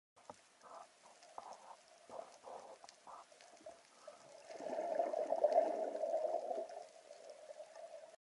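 Muffled underwater water sound picked up through an action camera's housing as a freediver dives down: a series of short swishes, then a louder rush of water starting about halfway through that fades near the end.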